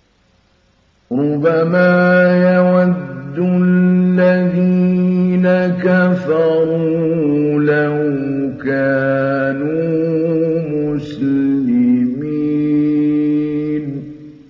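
Quran recitation in the melodic mujawwad style by a male reciter, starting about a second in: long drawn-out phrases on held notes with ornamented pitch turns and short breaks for breath between them.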